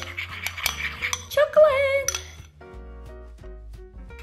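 A metal spoon clinking and scraping against a ceramic bowl of thick melted chocolate in the first two seconds, over background music.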